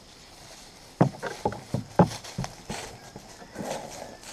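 A goat's hooves knocking on a hollow wooden deck as she walks up: a quick, uneven run of about ten sharp knocks over two seconds, the loudest about one and two seconds in.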